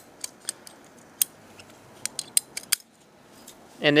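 Ratcheting PVC pipe cutter clicking as its handles are squeezed again and again, its blade working through a black plastic sprinkler riser to cut it to length. A string of short, sharp clicks fills the first three seconds, the loudest about a second in.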